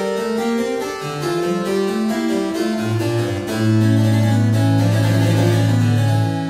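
Claviorganum being played, its harpsichord and organ pipes sounding together from one keyboard: a moving passage of plucked notes over steady held tones. About halfway in a low bass note comes in and is held to the end, and the music grows louder.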